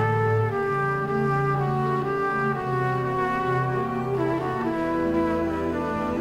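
Orchestral jazz ballad: a trumpet plays the melody in long held notes over sustained brass and orchestral chords.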